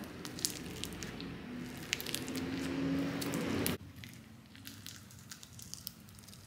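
Crunchy slime packed with cereal-like add-ins being stretched and squished by hand, giving soft squishing and many small crackles. It drops suddenly quieter about four seconds in, leaving only scattered crackles.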